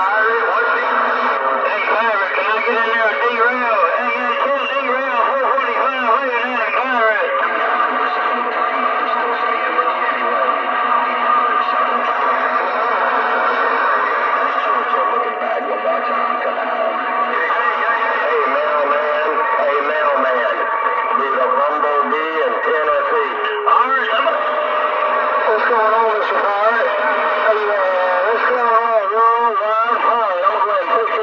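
A Galaxy DX 959 CB radio receiving channel 28 (27.285 MHz): operators' voices come through the radio's speaker thin and distorted, cut off at low and high pitch. Steady whistle tones run under the talk for several seconds, once through the middle and again later.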